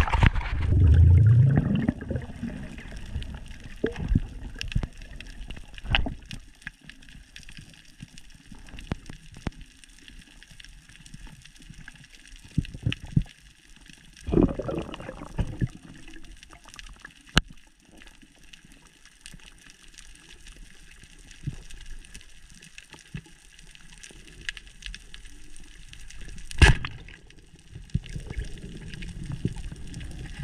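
Water and bubbles rushing loudly over the camera as it plunges under the surface, then muffled underwater reef sound: a steady hiss with scattered sharp clicks and a few short bursts of bubbles.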